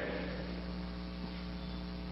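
Steady electrical mains hum, with faint hiss underneath, in a pause of the recorded speech.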